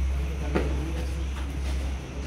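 A low, steady rumble with faint voices over it, and one sharp smack about half a second in.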